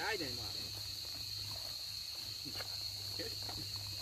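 Steady high-pitched chorus of insects that runs unbroken through the whole stretch, with a faint low hum beneath it.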